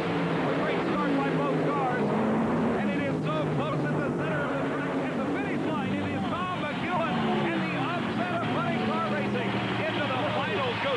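Two supercharged nitromethane V8 Funny Car engines at full throttle, racing side by side down the drag strip, heard on the television broadcast's sound track.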